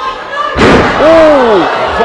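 A wrestler's body slamming down onto the ring canvas with a single loud thud about half a second in, as a fireman's carry collapses into a flop onto her back. A voice lets out an 'ooh' that falls in pitch right after.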